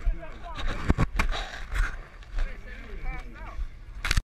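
Wind rumbling on the microphone of a camera carried by a runner, with a few sharp knocks about a second in and faint voices around.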